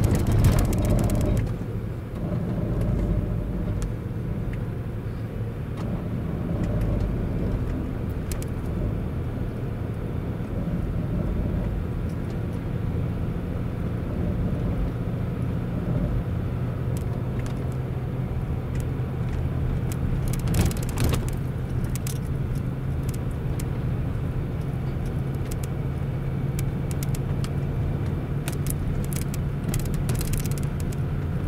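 A Land Rover heard from inside the cabin as it creeps down a snowy lane under hill descent control, its engine a steady low hum over the tyre noise. A few short buzzing bursts come from the ABS and traction control working the brakes on the snow, the biggest about twenty seconds in.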